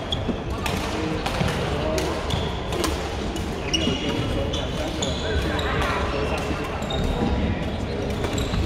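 Badminton rally: rackets smacking the shuttlecock in quick sharp hits. From about halfway through come short high squeaks of court shoes on the wooden floor.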